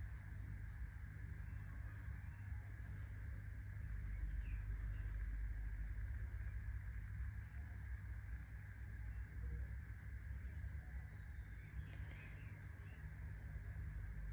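Faint steady background hum with a thin, steady high-pitched tone above it, and no distinct events.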